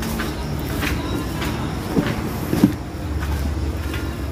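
Footsteps on a concrete floor over a steady low rumble, with two sharp knocks a little past halfway.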